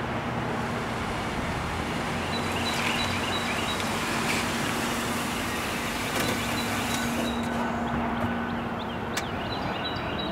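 An Oldsmobile sedan pulls into a parking space with its engine running. The steady engine hum stops about eight seconds in, and the driver's door opens with a sharp click near the end.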